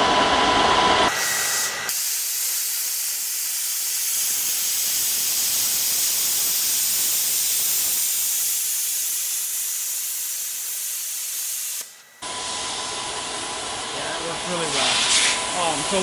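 Thermal Dynamics Cutmaster 60i X air plasma cutter gouging steel with its SL60QD torch: the plasma arc comes on about a second in with a loud, steady hiss and runs for about ten seconds before cutting off suddenly.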